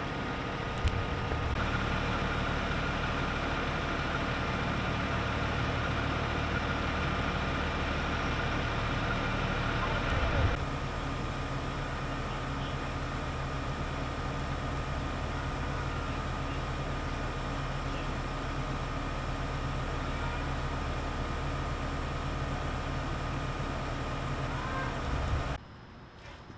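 An engine running steadily: a constant whine over a low hum. The sound changes abruptly about ten seconds in and drops away sharply near the end.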